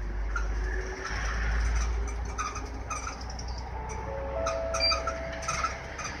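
An Isuzu PDG-LV234N2 route bus's diesel engine running with a steady low rumble, a little louder in the first couple of seconds. Short faint chirps and a few brief held tones sound over it in the second half.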